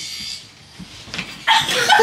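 Young women's voices breaking into high-pitched laughing and squealing about one and a half seconds in, after a short hiss-like burst at the start.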